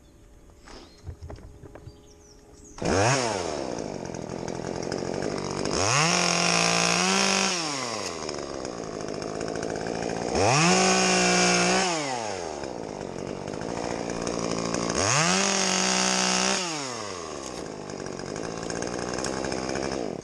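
Top-handle chainsaw starting up about three seconds in, then revved to full throttle three times for a second or two each, falling back to idle between, as it cuts small branches. It stops near the end.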